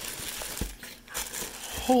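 Plastic bag wrapping crinkling and rustling as hands handle it inside a cardboard box, with a soft low knock about half a second in.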